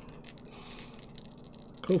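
Strat-O-Matic game dice being shaken and rolled onto a desk: a quick, continuous rattle of small clicks lasting nearly two seconds.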